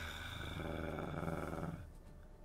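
Online slot game sound effect as the bamboo stacks change into symbols: a low, rough growl-like sound lasting under two seconds, over a steady high shimmering chime. Both stop together near the end.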